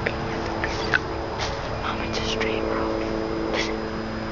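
Hushed, whispery voices over a steady hum of several low tones and hiss. Short hissy sounds come about a second and a half, two and a quarter, and three and a half seconds in.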